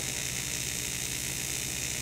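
AC TIG welding arc on aluminum, from a Lincoln Precision TIG 185 at 100 amps with the AC balance turned all the way toward penetration, buzzing steadily.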